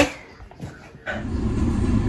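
About a second of quiet room tone, then a cut into a car's cabin. From there on there is a steady low rumble of cabin noise from the running car.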